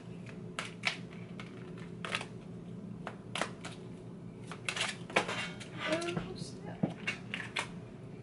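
A deck of divination cards being shuffled by hand: a run of irregular soft clicks and slaps as the cards are riffled and knocked together.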